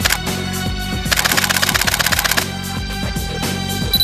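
Canon EOS 7D's shutter firing a rapid continuous burst, starting about a second in and lasting over a second, over music.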